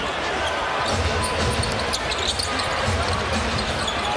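Basketball being dribbled on a hardwood court, repeated low bounces, over the steady noise of an arena crowd.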